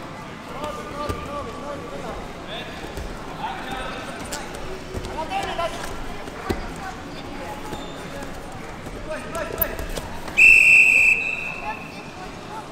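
A referee's whistle blown once near the end, a single shrill blast of under a second that stops the wrestling, over coaches' and spectators' shouts and a few thuds of bodies on the wrestling mat.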